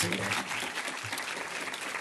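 Audience applauding steadily after a debate speech.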